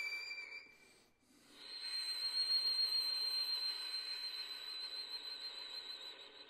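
Solo violin playing softly. A high note fades out, there is a brief pause about a second in, then a very high note is held with a wavering vibrato and slowly dies away.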